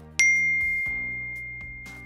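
A single loud bell-like ding about a fifth of a second in, one high clear tone that rings on and fades slowly over nearly two seconds, over soft background music.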